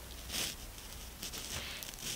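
Quiet room tone: a low steady hum and faint hiss, with a soft swell about half a second in and a couple of faint clicks in the second half.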